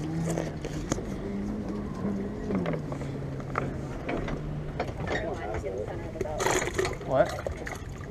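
Motorboat engine running close by, a steady hum whose note drops a little about two and a half seconds in. Light clicks from a plastic bait-tub lid being handled.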